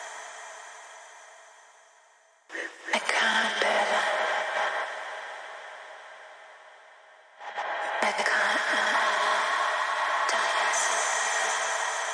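Opening of a techno track: a thin, radio-like sample with no bass. It comes in abruptly twice, about two and a half and seven and a half seconds in, and each time fades away.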